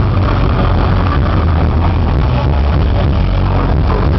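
A live stoner metal band playing a song at full volume: a dense, unbroken wall of distorted guitars, bass and drums with a heavy low end. It is heard from inside the crowd through a small recorder's microphone, which makes it sound muffled.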